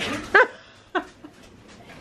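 A pet dog giving two short, high yips, the first louder, a little over half a second apart.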